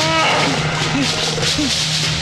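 An elephant trumpets once at the start, a short call that bends in pitch, over a film music score with a steady low drone and a short figure repeating about twice a second.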